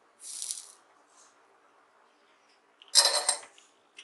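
Soldering at a workbench: a brief hiss about half a second in, then a louder, short metallic clatter about three seconds in as a tool or the flux tin is knocked against the bench.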